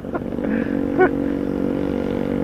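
Motorcycle engine running steadily at an even speed, a noisy, constant drone.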